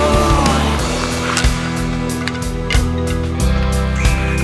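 Rock band song in an instrumental stretch: sustained bass and guitar chords over a steady drum beat, with a sung note trailing off about half a second in and the chord changing about three and a half seconds in.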